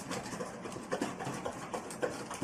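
Dog eating from a stainless steel bowl: a string of small, irregular clicks and chomps as it takes food from the bowl.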